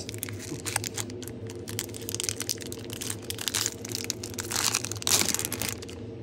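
Foil wrapper of a Pokémon Fusion Strike booster pack crinkling as it is worked and torn open by hand, in a dense run of irregular crackles, with a louder rustle about five seconds in.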